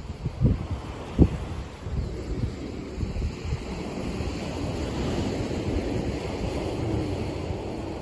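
Wind buffeting the microphone in uneven low gusts, with two sharp gust knocks in the first second and a half, over a steady rush of wind and surf on an open beach.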